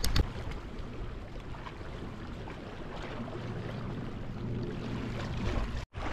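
Steady outdoor sea and wind noise on a rocky shoreline, with a short click just after the start. The sound cuts out briefly just before the end.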